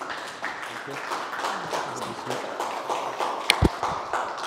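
Audience applauding in a large room, with a sharp thump about three and a half seconds in.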